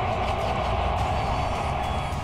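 Dramatic soundtrack music and sound effects: a dense, steady drone over a low rumble.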